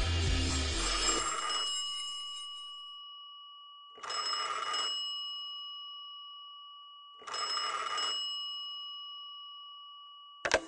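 Background music fades out, then a telephone bell rings twice, about three seconds apart. Each short ring leaves a bright tone that dies away slowly.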